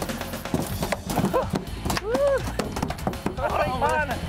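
A freshly landed mahi-mahi thrashing on a fiberglass boat deck, its body and tail slapping and knocking rapidly and unevenly, with men's shouts and laughter over it.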